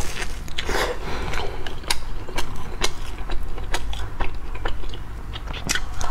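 Close-miked biting and chewing of a crusty, flaky fried bread roll: a run of irregular crisp crunches, several a second, as the crust breaks between the teeth.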